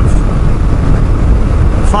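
Steady wind rush and engine and road noise from a motorcycle cruising at about 100 km/h, heavy in the low end.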